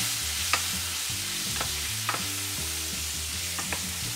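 Sliced bell peppers and onions sizzling in hot olive oil in a frying pan, stirred with a wooden spatula that knocks and scrapes against the pan about five times.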